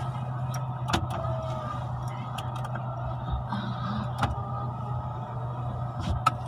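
Car engine running, heard inside the cabin as a steady low hum, with a couple of sharp clicks or knocks, one about a second in and another about four seconds in.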